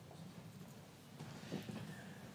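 Faint footsteps and small knocks of people moving about on a stage, over the low background noise of a large hall. One knock about a second and a half in is a little louder.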